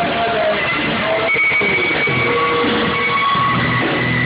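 A rock band playing live, with guitar, saxophone, keyboards and drums, in a loud, dense full-band passage with long held notes over the rhythm.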